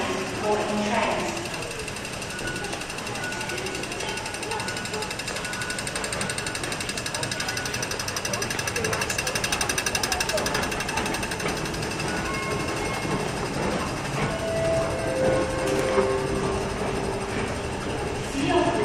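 Escalator running: a fast, even mechanical rattle that grows louder in the middle, with voices in the background.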